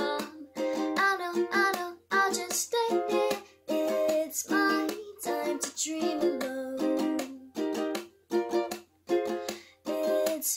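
Ukulele strummed in a steady rhythm while a woman sings over it, the lyrics in Japanese.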